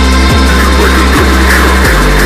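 Loud electronic music, dubstep-like, with a heavy sustained bass line and a sharp low hit about once a second.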